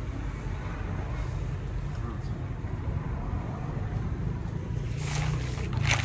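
Silk crêpe de Chine fabric rustling as it is handled and unfolded, loudest near the end, over a steady low rumble.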